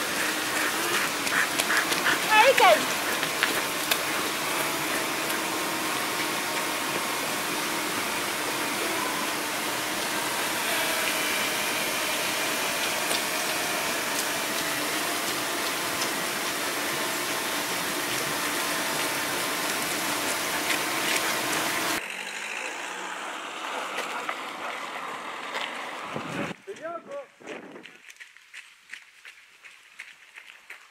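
Steady rush of water from a creek. A dog gives a couple of high yelps near the start. After a cut about two-thirds of the way through, the rushing stops and the sound turns much quieter.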